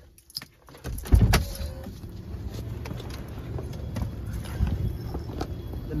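Car door latch clicking, then a heavy thump about a second in as the door opens. Steady traffic noise follows, with small clicks and rustling as someone climbs out of the car.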